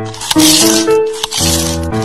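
Music: sustained held chords that shift to new notes twice, with a hissy high-end shimmer over them.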